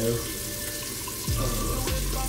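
Water running steadily from a bathroom tap into the sink.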